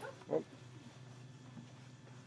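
A dog barks once, a single short bark about a third of a second in.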